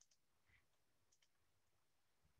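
Near silence: faint room tone with a handful of soft, short clicks.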